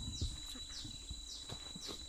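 Steady insect drone, with a thin high whine, and a short falling chirp repeating about twice a second; low thumps sound underneath.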